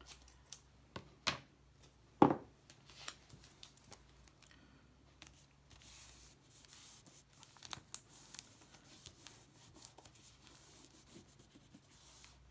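Scissors cutting a strip of white tape, a few sharp snips in the first three seconds, then a soft rubbing as hands smooth and press the tape down over the edge of the felt onto the wooden board, with a few light clicks.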